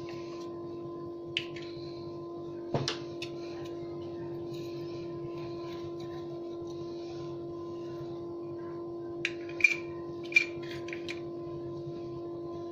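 A steady hum, with faint sizzling from an egg-and-bread omelette frying in oil over a low flame. A few light clicks come in, mostly near the end.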